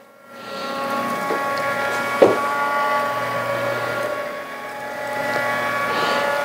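Electric motor of a motorized shooting tarp winding the tarp up, a steady whine of several tones that builds over the first second and then holds, with a single knock about two seconds in.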